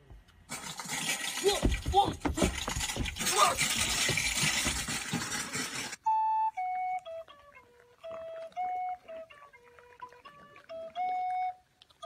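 For about the first half, a loud rush of noise with a person's rising and falling cries in it. Then it cuts suddenly to a simple melody of single flute-like notes, stepping up and down.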